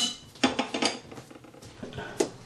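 Chopsticks clinking against a ceramic bowl while mixing chicken drumsticks in their sauce: a few light taps in the first second, then quieter stirring.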